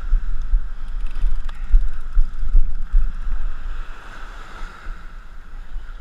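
Wind buffeting the microphone in uneven gusts, over the steady wash of small waves breaking at the shoreline.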